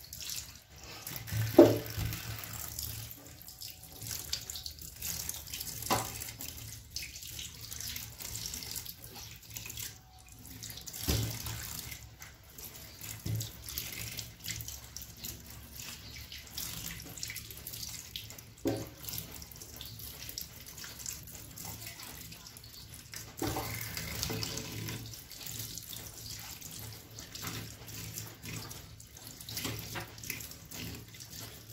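Tap water running steadily into a stainless steel sink while hands rinse eels in a plastic basket, with a few brief louder bumps, the loudest about a second and a half in.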